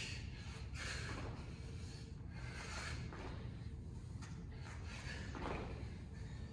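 A man breathing hard while doing side-to-side squat steps, about one breath every three-quarters of a second, over a steady low hum of the hall.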